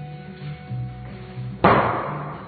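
Background music with a steady bass line. Near the end comes one loud thud, the lifter's feet stamping down on the wooden lifting platform as she catches a barbell snatch overhead.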